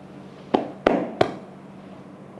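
Three sharp slaps about a third of a second apart: a masseuse's hands striking the client's body in percussive massage strokes.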